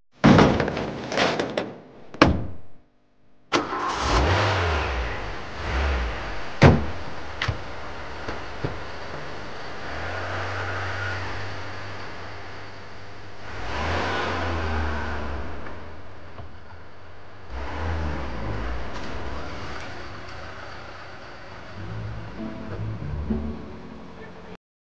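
Honda saloon car: a few sharp knocks in the first couple of seconds, then about three and a half seconds in the engine starts and keeps running, rising and falling several times as it revs and the car moves off.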